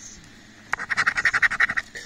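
A coin scraping the coating off a scratch-off lottery ticket in a quick run of rapid back-and-forth strokes, starting under a second in and lasting about a second.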